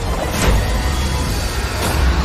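Sound effects of a magical battle in an animated fantasy: a heavy, continuous low rumble of surging energy with swelling whooshes about half a second in and again near the end, over a dramatic music score.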